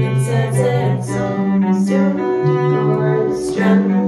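Small band playing a slow song: a bowed cello holds long low notes that change about once a second, under electric guitar chords and a singing voice.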